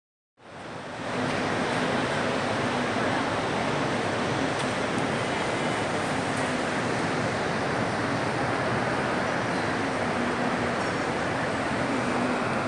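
Steady, even background din of a large glass-roofed shopping mall atrium, a hiss-like wash of distant crowd and ventilation noise with no distinct voices or events. It fades in within the first second.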